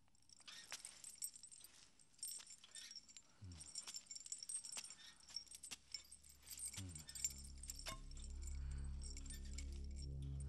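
Faint, irregular metallic jingling and clinking, many small clinks in quick succession, like loose metal links or keys shaken. About seven seconds in, a low sustained musical drone comes in under it.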